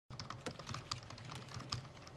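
Typing on a computer keyboard: a quick, uneven run of keystroke clicks, about seven or eight a second.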